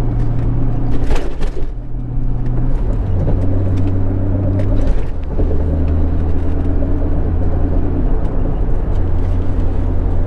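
Nissan Skyline GT-R (BCNR33)'s RB26 twin-turbo straight-six heard from inside the cabin, running quietly with an inner silencer fitted in the exhaust. The engine note drops in steps about two, three and five seconds in, with a brief hiss about a second in.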